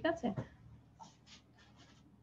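A woman's voice finishes a short phrase, then a few faint, brief scratchy noises over a video call's audio.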